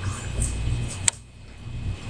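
Handling noise from a metal pipe tool working carbon out of a pipe bowl and into an ash cup. There is a low rumble and one sharp click about a second in, after which it goes quieter.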